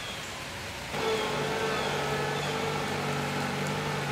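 Compact tractor engine running steadily, coming in about a second in after a faint hiss.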